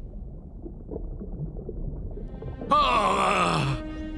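Animated-film soundtrack: a low rumble, then about three seconds in a loud, wavering vocal cry of about a second that falls in pitch at its end. Sustained, ominous music tones come in near the end.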